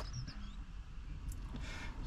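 Quiet background with a steady low hum and a few faint, short high chirps like small birds calling, plus one light click a little past halfway.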